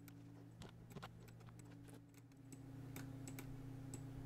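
Faint, irregular clicks of a computer keyboard and mouse as commands are typed and items are clicked in software, over a steady low hum that gets slightly louder about halfway through.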